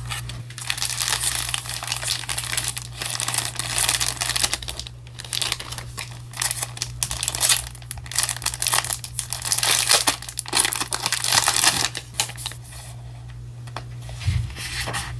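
Paper stationery crinkling and rustling as it is handled, in bursts with short pauses, over a steady low hum.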